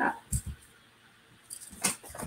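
Soft handling sounds of a felt-tip marker and a paper template on a T-shirt on a table. There are a couple of low knocks about half a second in and a short rustle near the end.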